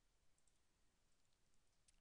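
Near silence: faint room tone with a few soft computer mouse clicks.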